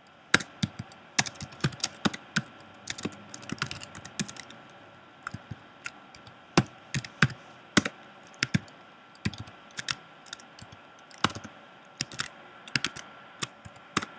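Typing on a computer keyboard: irregular runs of key clicks with short pauses between them.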